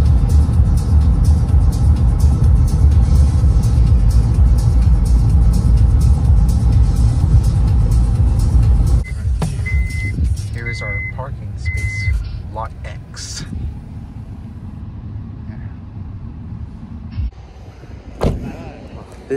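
Road and engine rumble heard inside a car cabin at highway speed, with music playing over it. About nine seconds in the rumble drops as the car slows, and three short high beeps sound soon after.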